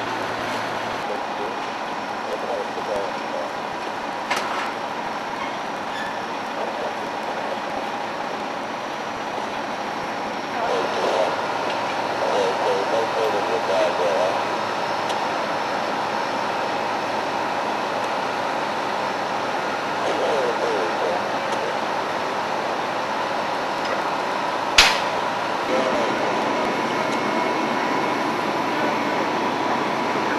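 Steady running of fire apparatus at a working fire, a constant drone with a thin steady tone held through it. Indistinct voices rise over it now and then, and a sharp knock sounds about 25 seconds in.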